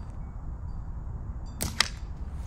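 Slingshot shot: a sharp snap of the bands and pouch on release, then a louder crack about a fifth of a second later as the steel ball strikes beside the target.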